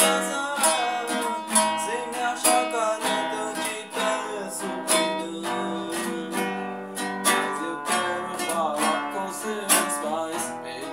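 Music: an acoustic guitar strummed in chords throughout.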